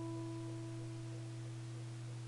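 Acoustic guitar chord left ringing and slowly fading, a few steady notes sustaining with no new strum.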